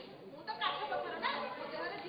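Speech: spoken dialogue between actors, in syllable-length phrases with short gaps.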